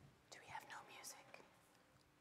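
Near silence broken by a brief faint whisper of a few words, starting about a third of a second in and lasting about a second.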